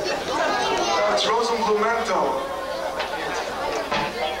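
Indistinct talking from several people at once in a large room, with no music playing.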